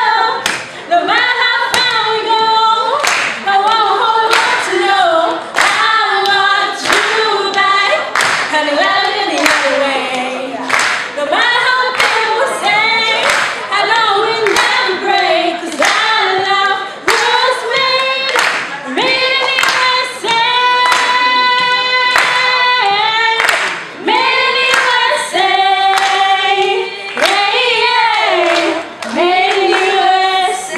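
A group of young women singing a pop song together into microphones, in loose unison, with sharp claps keeping a steady beat about one and a half times a second.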